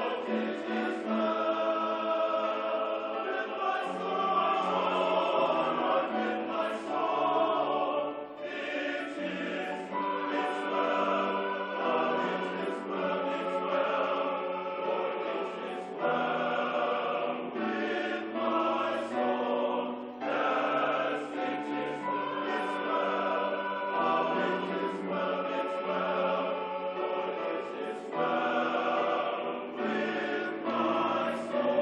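All-male choir singing in parts. It holds sustained chords in long phrases, with brief breaks between phrases about every four to eight seconds.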